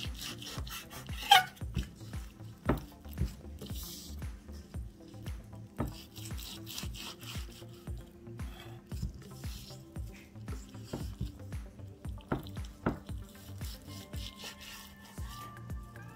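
Kitchen knife sawing through raw bacon and knocking against a wooden cutting board, in a string of irregular strokes and knocks.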